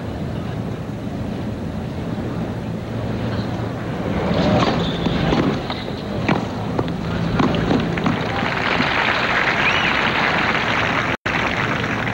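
Tennis point on a hard court: a serve and a short rally of racket strikes on the ball heard over stadium crowd murmur between about four and seven seconds in, then the crowd applauds the point. The audio cuts out for an instant near the end.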